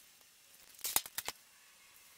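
A quick cluster of four or five sharp clicks about a second in, from a USB-C power cable being unplugged and handled at the base of a display.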